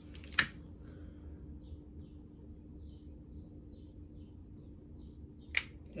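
A hand-held lighter being clicked to light a beeswax candle's wick: a sharp click about half a second in and another near the end, with faint soft ticks between, over a faint steady hum.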